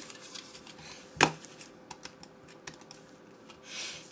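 Small plastic clicks and taps from a Logitech M215 wireless mouse being handled and tried out, scattered and irregular, with one sharper, louder click about a second in.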